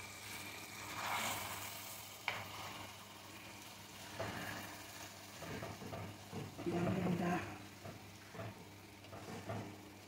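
Yogurt-marinated chicken and onions sizzling in a nonstick pan while a wooden spatula stirs and scrapes through them. A sharp click comes about two seconds in, and a short pitched sound comes about seven seconds in.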